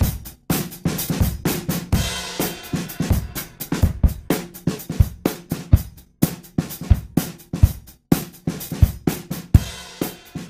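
Drum loop of kick, snare and hi-hats playing through Softube Console 1's SSL 4000 E channel strip. As it plays, the drive saturation is turned down from a heavy setting and the transient shaper's punch is raised.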